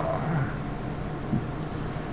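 A man's short throaty vocal sound, his reaction to the taste of a sip of pickle juice, fading out about half a second in. After it there is only a steady low hum.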